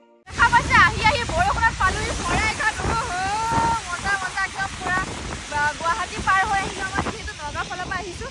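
Wind rushing over the microphone from the open window of a moving car, with high-pitched voices calling out over it.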